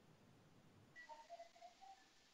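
Near silence, with faint short chirping notes from about a second in.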